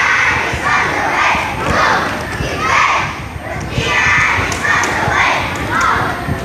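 A group of young boys shouting a cheer in unison, a loud shouted chant about once a second.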